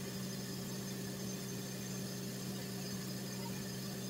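Steady low mechanical hum with an even hiss under it, unchanging throughout: bathroom background noise.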